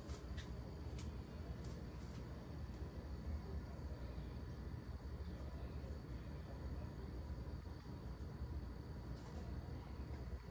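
Faint sound of a DVD player loading a VCD: a low steady hum, with a few soft clicks in the first two seconds.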